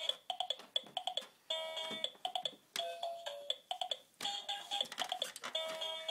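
Electronic toy music from a ride-on bouncing pony toy: a tinny melody of short beeping notes, in phrases that break off twice briefly, with a few light clicks.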